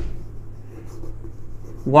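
Chalk scratching and tapping faintly and unevenly on a chalkboard as a word is written by hand.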